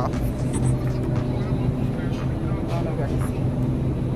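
Store-aisle background: a steady low hum with faint voices in the distance, and the rub and knock of a handheld phone moving against clothing.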